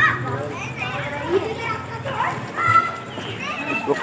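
Voices talking in the background, with children's voices among them; no animal or mechanical sound stands out.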